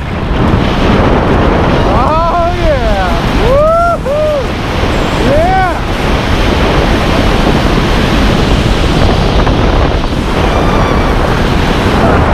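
Loud, steady wind rushing over the camera microphone under an open parachute canopy. A few short rising-and-falling whoops from a person come between about two and six seconds in.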